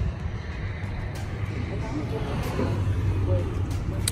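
Steady low background rumble with faint voices in the background.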